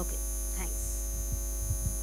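Steady electrical mains hum carried through the microphone and sound system. A sharp click comes right at the start, and a few soft low thumps follow in the second half as a handheld microphone is picked up.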